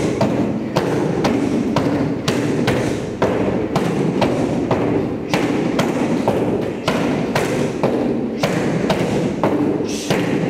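Kicks thudding into padded kick shields and bag mitts from several groups at once, an irregular run of impacts at roughly three a second.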